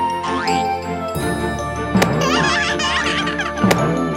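Bouncy cartoon background music with jingly notes, broken by two sharp sound-effect hits about two seconds in and near the end as the ball is played, with a child's giggling between them.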